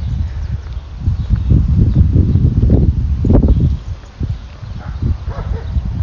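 Wind buffeting a phone microphone outdoors: a loud, irregular low rumble that eases off about four seconds in.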